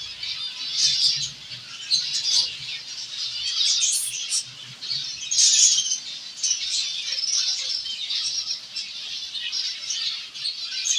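Many zebra finches in a colony room chirping and calling at once: a continuous, overlapping high-pitched chatter that swells about a second in, around four seconds and again around five and a half seconds.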